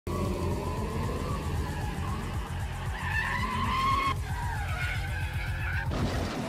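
Cartoon sound effect of a small car's engine running, its higher whine gliding and shifting pitch about four seconds in, mixed with music.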